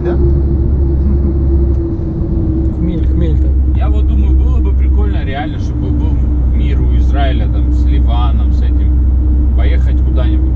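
Road noise inside a moving car's cabin: a steady low rumble from engine and tyres, with a constant hum over it. People's voices talk over the noise through much of it.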